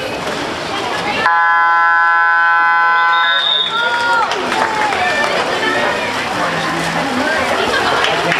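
Water polo game horn (buzzer) sounding one steady blast for about two seconds, starting about a second in, with a short referee's whistle as it ends. Spectators shout over it.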